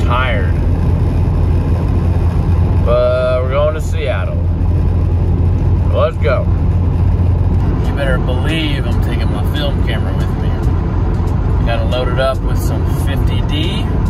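Steady low road and engine rumble inside a van's cabin while it drives along a highway.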